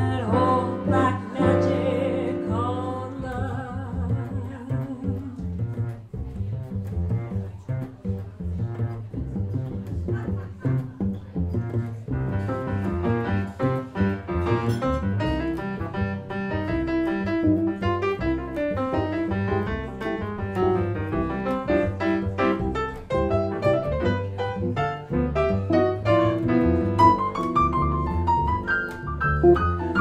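Jazz combo of upright double bass, grand piano and guitar playing an instrumental passage, with the plucked double bass prominent.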